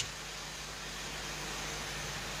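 Steady room tone: an even background hiss with a faint low hum.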